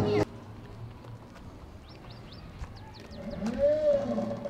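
Outdoor street ambience: a steady low background with a few faint high chirps about two seconds in. Near the end a brief call rises and falls in pitch. A louder pitched sound cuts off abruptly just after the start.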